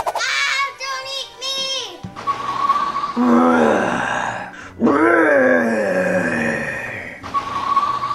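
Two long, drawn-out monster moans, a deep voice sliding down and back up in pitch, played for a Frankenstein's monster toy figure. Before them come a few quick high vocal cries.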